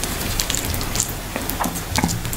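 Fingers squishing and pulling through egusi soup, fufu and goat meat on a plate, a run of small wet, sticky clicks and crackles.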